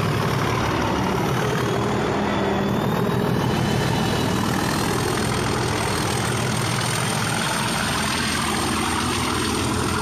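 Class 37 diesel-electric locomotive, its English Electric V12 engine running at a steady note as the locomotive-hauled train pulls out and draws away.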